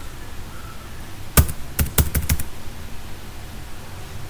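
Computer keyboard keystrokes: a quick run of about seven key clicks in about a second, typing a terminal command.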